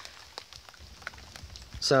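A quiet pause filled with faint scattered light ticks and crackles over a low background. Near the end a man's voice comes in.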